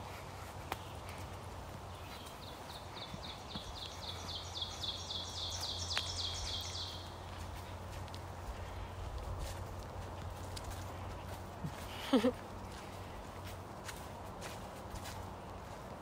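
A forest songbird singing a high series of quick repeated notes, about four a second, growing louder over about five seconds and then stopping. Soft footsteps on a dirt trail go on underneath, and a short laugh comes near the end.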